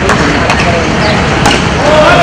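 Voices of players and spectators over a loud, noisy background, with a few sharp knocks.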